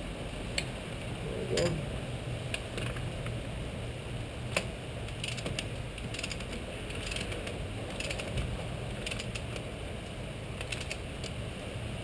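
Ratchet torque wrench clicking in short, irregular bursts as a spark plug is tightened into the cylinder head, over a low steady hum.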